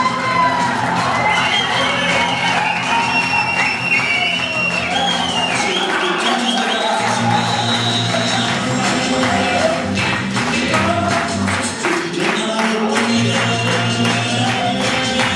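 Dance music playing loud in a hall: a wandering melody line over a steady bass and busy, rattling percussion that grows denser in the second half.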